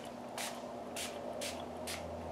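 Distress Oxide spray bottle pumped in three short hisses of mist, about half a second apart.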